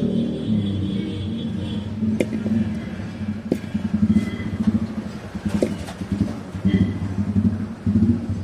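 Road traffic: a low, uneven engine rumble, with a few knocks.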